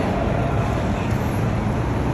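Steady road-traffic noise from buses and SUVs at a covered airport pickup curb, a low, even rumble with no sudden events.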